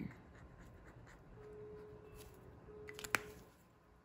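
Faint strokes of a Tombow brush pen writing on planner paper, then a single sharp click about three seconds in.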